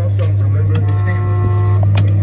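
Stuart Little coin-operated kiddie ride running with a steady low hum, while its speaker plays a steady electronic tone of several pitches for about a second in the middle, ending in a click.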